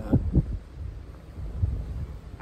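Low, uneven rumble of wind buffeting the microphone, after a man's voice finishes a word at the start.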